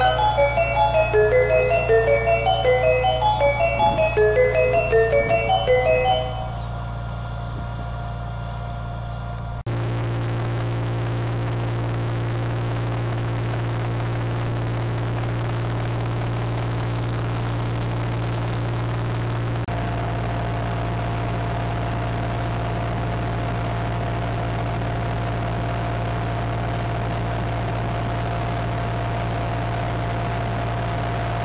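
Music of short bright notes fades out about six seconds in. From then on the Fiat 580 tractor's diesel engine runs steadily while pulling a planter, heard from inside the cab, its tone shifting slightly about ten and twenty seconds in.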